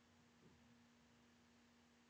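Near silence: a faint steady electrical hum from the recording chain.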